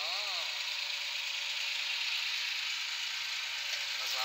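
Tractor engine running steadily as the tractor works through mud, an even hum with no revving or knocks.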